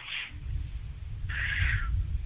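A short breathy hiss from a man between phrases, about two-thirds of the way through, over a steady low rumble.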